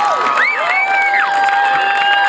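Crowd cheering and whooping, with long held high calls that slide up and down in pitch over the general noise of the stands.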